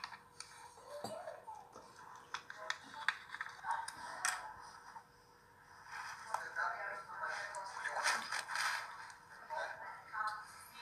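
People talking quietly, with scattered clicks and scrapes, a faint steady hum and some music in the background. The talk dips briefly around the middle and is loudest near the end.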